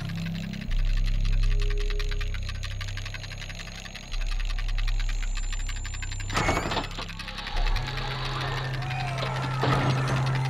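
Soundtrack music: low held bass notes that change every few seconds under a fast, even mechanical ticking, with two short, louder noisy bursts, one past the middle and one near the end.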